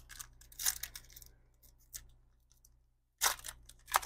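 The wrapper of a Panini Certified football card pack crinkling and tearing as it is ripped open by hand: a few short rips, then a louder, longer tear near the end.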